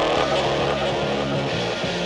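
Snowmobile engine running under throttle through deep snow, mixed under a music soundtrack.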